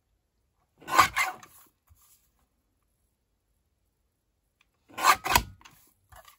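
Paper trimmer's sliding blade cutting through a strip of designer paper, two quick rasping strokes about four seconds apart, each under a second long, trimming off the score lines.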